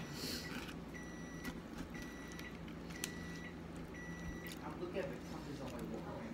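Four high electronic beeps, evenly spaced about a second apart, each lasting about half a second, over a steady low hum.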